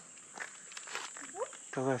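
Faint footsteps on an asphalt road with light rustling, and a short rising tone about a second and a half in.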